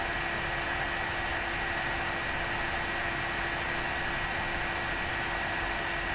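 AMD Radeon R9 290X reference blower-style cooler fan running steadily at 50% fan speed: a loud, even rush of air with a faint steady low hum and a thin high tone in it.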